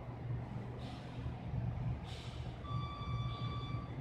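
A low rumble runs throughout. About two-thirds of the way in, a single high electronic beep sounds and is held for about a second.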